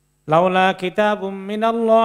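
A man reciting a Quranic verse in Arabic in a slow, melodic chant, holding long steady notes; his voice comes in just after a brief silence at the start.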